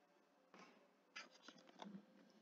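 Near silence: room tone with a few faint short clicks and scratches, one about a quarter of the way in and several more in the second half.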